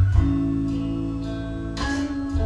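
Live band accompaniment to a slow blues-soul ballad with no vocals. A guitar strums a chord at the start and again near the end, and the chord rings on over a steady bass.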